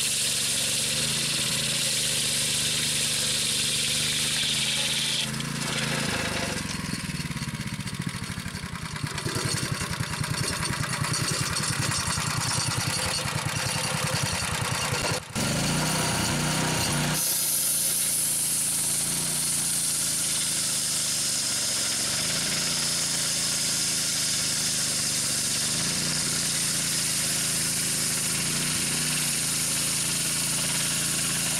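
Homemade portable sawmill: a Honda GX270 single-cylinder four-stroke engine drives a carbide-tipped circular saw blade ripping through a log, with a steady engine drone under a high-pitched cutting hiss. For several seconds in the middle the cutting noise fades and the engine note drops to a lower, even pulsing. Steady sawing resumes in the second half.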